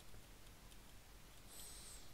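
Near silence: faint room hum with a few faint ticks, and a brief faint high hiss near the end.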